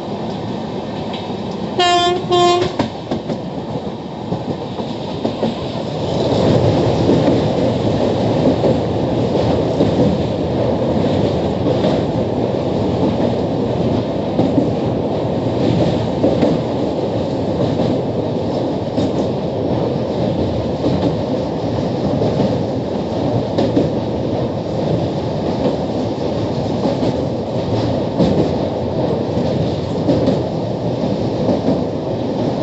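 Train heard from on board: the horn sounds two short blasts about two seconds in. Then, from about six seconds, the running noise of the wheels on the rails grows louder and stays loud as the train rolls onto a bridge high over a river.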